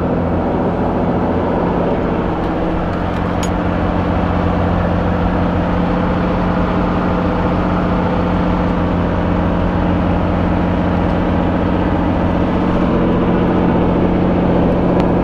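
Helicopter engine and rotor running on the ground, heard from inside the cabin: a loud, steady drone with a low hum, growing slightly louder a few seconds in.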